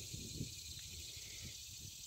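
Faint, steady high-pitched hiss of outdoor background noise.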